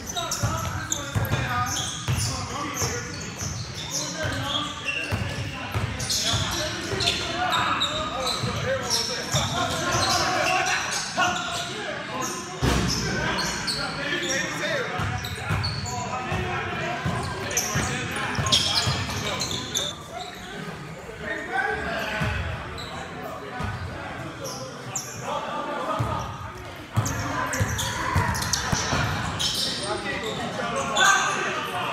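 Basketball bouncing off a hardwood-style gym court during play, with repeated dribbles and impacts, players' footsteps and voices calling out, all echoing in a large gym.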